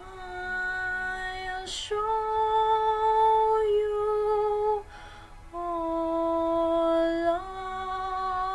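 A young woman singing a slow song solo, holding long sustained notes that step up and down in pitch. Short breaths between phrases can be heard about two seconds in and again about five seconds in.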